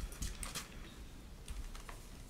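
A few faint, scattered clicks of typing on a keyboard.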